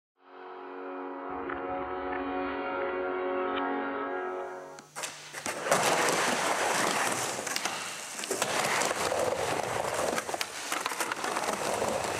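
A held, droning musical chord for about the first five seconds, then skateboard wheels rolling on a wooden vert ramp, a continuous rumble with frequent sharp clacks of the board and trucks.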